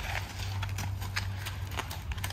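Hoofbeats of a heavy draft-type horse walking on a gravel yard: a few irregular, uneven knocks of its hooves, with a low steady rumble underneath.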